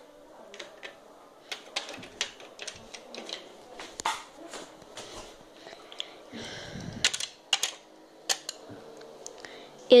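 Irregular clicks and taps of small plastic toys being handled and set down in a plastic toy house, with a brief rustle about six and a half seconds in.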